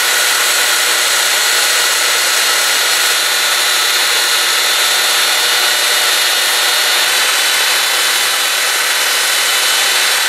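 Belt sander running steadily with the narrow tip of a powder horn pressed against the moving belt, grinding the horn down to a round shape; a continuous loud whir with the hiss of the abrasive on horn.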